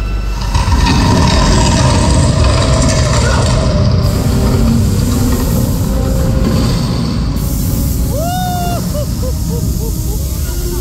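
Show sound effects over the theatre's speakers: a loud, steady low rumble as the temple's booby traps are set off. A few short high squeals rise and fall near the end.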